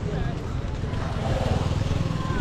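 A small motorcycle engine running nearby, a steady low rumble.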